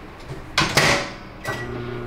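Microwave oven door shut with a clunk, then a short beep about a second and a half in, and the oven starts running with a steady low hum.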